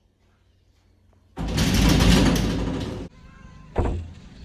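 A door being rattled or worked open: a loud rattling burst under two seconds long that starts and stops abruptly, then a single sharp click or knock shortly after.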